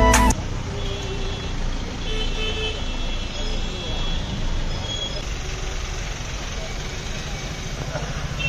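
Cars rolling slowly past on a narrow street: steady engine and tyre noise, with scattered voices and a few short horn toots. Background music cuts off at the very start.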